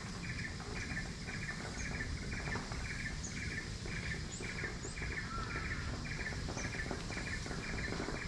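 Outdoor wildlife ambience: a call repeated steadily about twice a second, with faint higher chirps now and then, over a low rumble.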